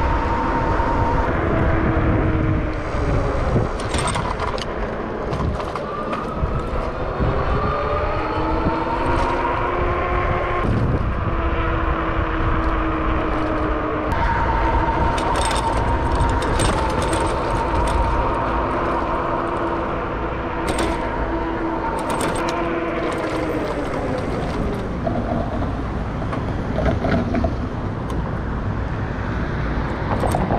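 Rad Power electric bike's hub motor whining as it rides along, its pitch climbing as the bike speeds up and sliding down as it slows, over heavy wind noise on the microphone. A few short clicks and rattles come through along the way.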